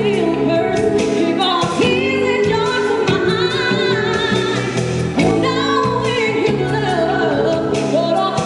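A woman singing live with a wavering vibrato over a backing band of electric bass and keyboards, amplified through a concert PA.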